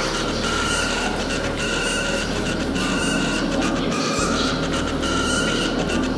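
Background music: a steady low drone under a short high figure that repeats about once a second.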